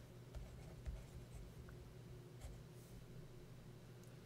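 Faint scratches and light taps of a stylus writing a word on a tablet, over a low steady hum.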